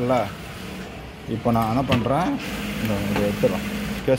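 A man speaking in short phrases, with a faint steady low hum underneath in the second half.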